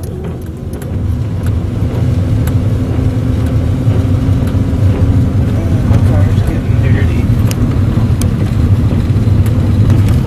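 Car engine and road noise from a moving car, a steady low drone that grows louder over the first two seconds as it picks up speed, then holds steady.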